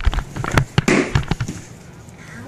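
A quick cluster of thumps and knocks, loud and close, from a child cartwheeling on a hardwood floor: hands and feet landing, with the camera she wears round her neck bumping and rubbing against her as she turns. It dies away after about a second and a half.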